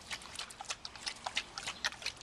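Dog splashing at the water of a plastic kiddie pool with its muzzle: quick, irregular small splashes and slaps of water, several a second.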